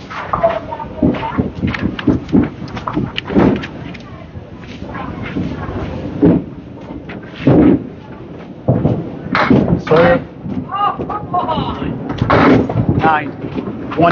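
Candlepin bowling alley din: repeated sharp clacks and knocks of candlepins and small balls on the lanes and ball return. Bowlers' voices talk in the background.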